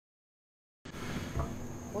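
Digital silence for nearly a second, then a steady background hiss with a faint low hum as a new clip's recording begins; a woman's voice starts at the very end.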